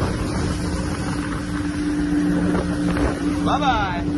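Motorboat under way at speed: the engine runs with a steady drone over the rush of water and wind on the microphone.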